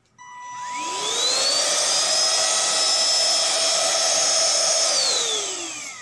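Xiaomi Shunzao cordless handheld vacuum cleaner switched on and run in the air. Its motor whine rises in pitch over the first second or so, holds steady and loud, then falls away as it is switched off near the end.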